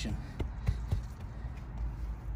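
A gloved hand spreading and patting shredded mulch around a tree's base: three short soft taps in the first second, the middle one the loudest, over a low steady rumble.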